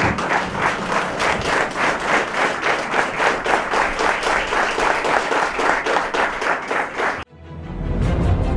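A large crowd clapping together in a fast, even rhythm, about four claps a second. It cuts off suddenly near the end and music starts.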